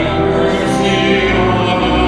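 A group of voices singing a hymn together to organ accompaniment, held at a steady loudness.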